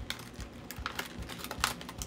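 Clear plastic slot-car package being handled, giving a few irregular crackling clicks, the loudest near the end.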